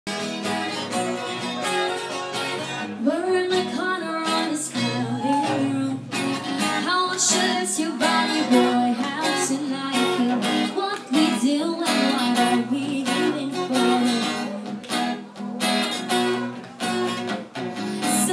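Live acoustic guitar played by a man, with a woman singing over it; the guitar plays alone for the first few seconds before her voice comes in.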